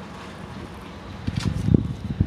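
Wind buffeting the microphone: a steady low rumble that breaks into irregular gusting thumps about a second in.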